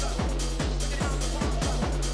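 Electro dance music playing through a club sound system: a steady kick drum pattern, each hit dropping in pitch, over a deep held bass line.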